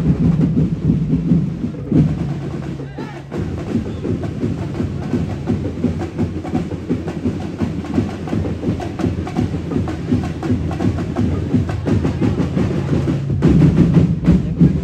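A festival tribe's drum corps playing fast, dense, continuous drumming on bass drums and other percussion, dipping briefly about three seconds in and getting louder again near the end.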